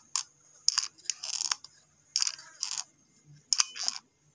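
Hot glue gun in use, its trigger squeezed to feed the glue stick: several short, irregular clicks and rasps with quiet gaps between them.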